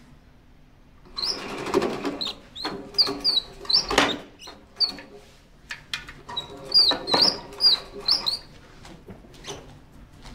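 Dry-erase marker writing on a whiteboard: a run of short, squeaky strokes from about a second in until near the end, with a sharp tap about four seconds in.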